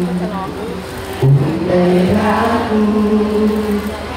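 Live singing through a stage sound system: a slow song of long held notes, with a wordless "uuuh" vocalise near the end.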